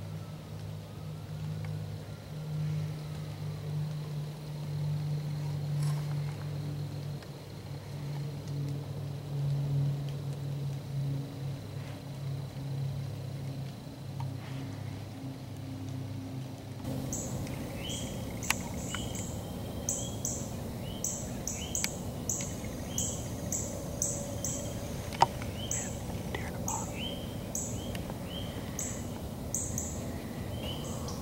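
Woodland ambience. A steady low hum runs for about the first half, then gives way abruptly to outdoor noise with a bird chirping repeatedly, short high calls about once a second, and a few sharp clicks.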